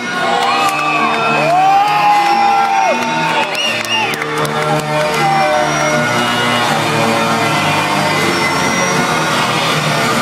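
Loud live electronic music in a large hall, a repeating pattern of short notes, with audience whoops and cheers rising over it in the first few seconds.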